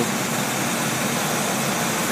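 Car engine idling steadily, an even running sound with a low hum.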